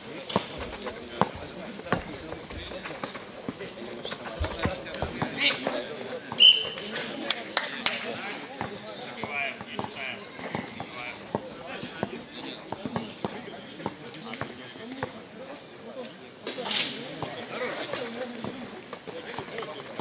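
Basketball bouncing on an outdoor court amid steady background voices and chatter, with scattered impacts throughout. A short high squeak about six seconds in is the loudest sound.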